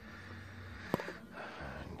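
A single sharp click about halfway through, from hands working among the plastic connectors and chassis parts inside a rear-projection DLP TV, over a faint steady low hum.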